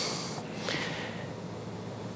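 A man drawing a breath close to the microphone: a short hiss at the start that fades within the first second, followed by faint room tone.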